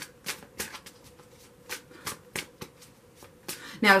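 A deck of tarot cards being shuffled by hand: a run of quick, irregular card flicks and snaps.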